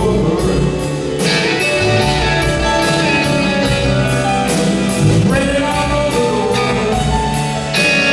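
Live band playing a slow soul ballad: electric guitar, bass, keyboard and drums, with steady cymbal strokes keeping time.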